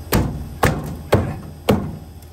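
Four sharp knocks about half a second apart: a white plastic downspout rodent guard being knocked onto the end of a downspout elbow to seat it.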